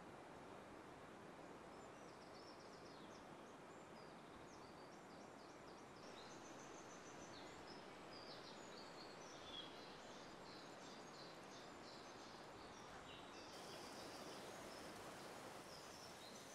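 Near silence in a forest: a faint steady hiss with small birds chirping quietly and repeatedly.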